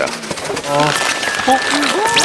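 Crowd of onlookers letting out short exclamations as hot water is flung into extremely cold air. A steady high tone comes in about a second in.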